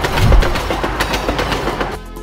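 Train sound effect: a rushing train with a rapid clickety-clack of wheels over rail joints and a low thump about a third of a second in. It cuts off at the end.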